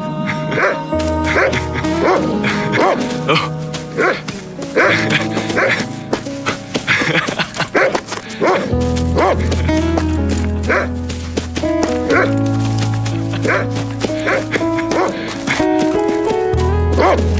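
An Afghan hound barking repeatedly over film score music, whose low held bass notes change every few seconds.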